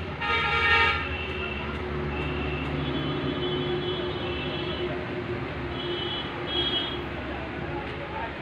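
A vehicle horn honks for under a second near the start, over a steady hum of traffic; fainter short horn tones sound a few seconds later.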